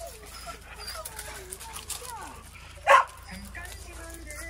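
Dogs whining in high, wavering tones, with one short, loud bark about three seconds in.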